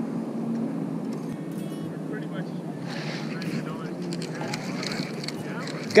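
Steady low rushing noise of wind over the camera's microphone, with faint distant voices about two to three seconds in.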